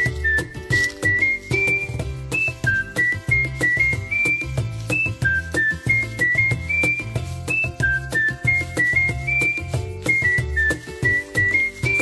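Background music: a cheerful whistled melody of short stepped notes, repeating its phrase over a steady bass beat.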